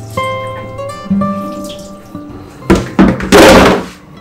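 Background film music with held and plucked notes; about three seconds in, a few loud bursts of splashing and clatter at a kitchen sink where dishes are being washed under the tap.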